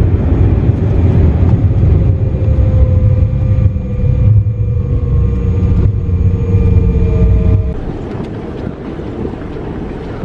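Jet airliner landing rollout heard from inside the cabin: a loud, steady rumble of the wheels and engines, with a faint tone slowly falling in pitch as the plane slows. About three-quarters of the way in it cuts off sharply to a quieter, steady rumble.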